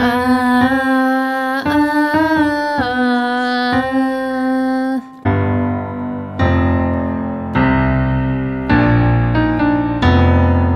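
A woman sings a slow, held melody line of a few notes, stepping up and back down, over a keyboard. About five seconds in, the voice gives way to digital piano chords with a deep bass, the chords changing every second or so.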